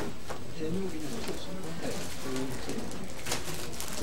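Low, indistinct murmuring of people talking quietly in a meeting room, with no clear words.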